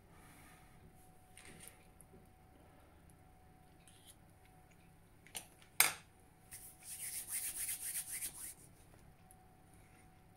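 Cutlery on a plate while eating: two light clicks a little past halfway, the second one sharp, then about two seconds of scraping.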